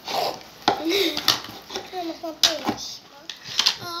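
Several sharp clicks and knocks of small plastic slime containers and molds handled on a wooden table, with children's voices between them.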